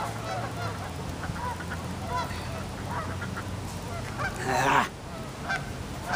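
Geese honking repeatedly in short calls over a steady low rumble, with a brief rustling rush about four and a half seconds in.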